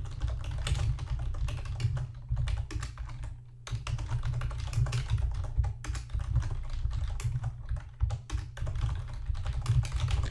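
Computer keyboard typing in quick, uneven runs of keystrokes, with short pauses about three and a half seconds in and again about eight seconds in.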